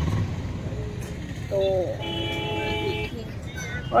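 A vehicle horn sounds one steady, level note for about a second, near the middle, over a low background hum of outdoor traffic.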